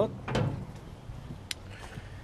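Lid of a steel barrel smoker being lifted open: a short metallic rattle about a third of a second in, then a single sharp click about a second and a half in.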